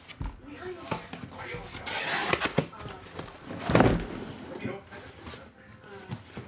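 Cardboard shipping case being opened and emptied: irregular scraping and rustling of cardboard as the flaps are worked and the boxes inside are pulled out, with a louder burst about two seconds in and another near four seconds.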